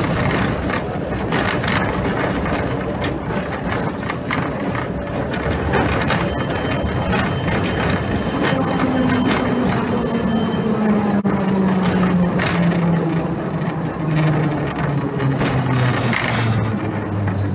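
Ride noise inside a historic N3 tram: steel wheels rumbling and clicking over the rails. Thin high steady ringing tones sound for a few seconds around the middle. From about nine seconds in, a low motor whine falls steadily in pitch as the tram slows.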